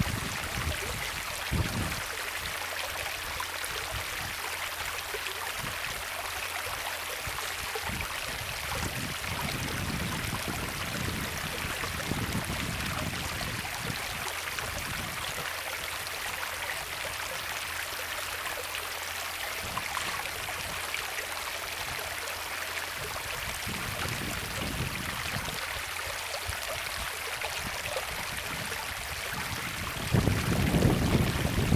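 Creek water running steadily over rocks, a continuous even rush, with a few brief low rumbles.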